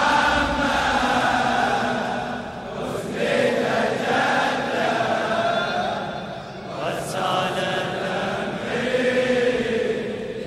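A large crowd of men chanting a Shia mourning chant together, with many voices held in long drawn-out phrases. A single short sharp hit, like a clap, comes about seven seconds in.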